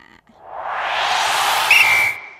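A swelling whoosh transition sound effect that builds over about a second and a half, with a short high ping near the end.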